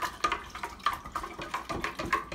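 A spoon stirring sweet tea in a large glass jar, with quick, irregular clinks and scrapes against the glass over the swirl of the liquid. The tea is being stirred to dissolve sugar that has settled undissolved.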